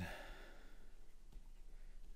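A faint exhale from the person, over low room noise.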